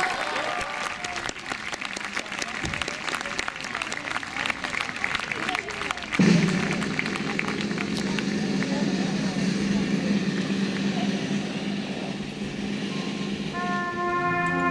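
Audience applause, scattered clapping that thins out over the first six seconds. About six seconds in, a steady low sustained tone starts suddenly and holds.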